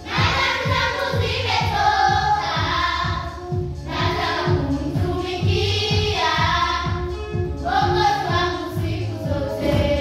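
A children's choir singing a Swahili gospel song together over musical accompaniment with a steady beat.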